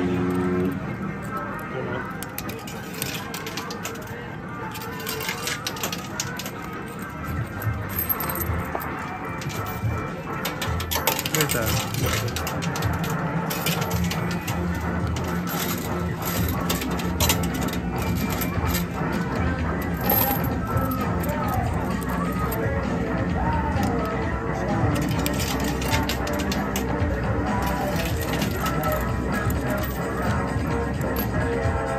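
2p coins clinking and dropping in a coin pusher machine, many small metallic clicks throughout, with music playing in the background.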